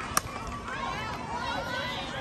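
A softball bat strikes the ball once, a single sharp crack about a fifth of a second in, as the batter puts the pitch in play. Voices calling out follow through the rest of the moment.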